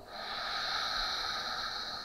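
A long, steady breath through the nose, a soft hiss that swells in at the start and holds, one count of slow, paced box breathing (sama vritti pranayama).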